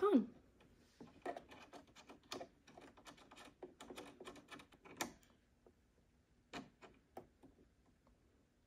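Faint, quick, irregular clicks and ticks of fingers turning the small metal needle clamp screw of a sewing machine to tighten it. The clicks come densely for about four seconds, then a few scattered ones follow.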